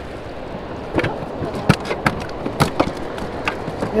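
Choppy water splashing and lapping against a small jon boat, broken by a handful of sharp knocks and clacks on the boat.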